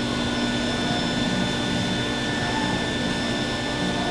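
Steady hum and hiss of room fans or air handling, with a few faint steady tones running through it.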